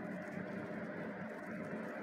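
Stone pestle (ulekan) grinding a wet chilli and shrimp-paste sambal against a stone cobek mortar: a faint, steady scraping and squishing with no separate strikes, over a low steady background hum.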